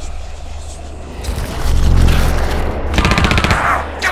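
Rapid automatic fire from an M4-style carbine: a fast, evenly spaced burst of shots starting about three seconds in. Before it, a swelling rush of noise builds over a low steady drone.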